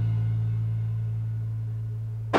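A single low note from an amplified rock instrument held and ringing out as the song ends, fading slowly and evenly.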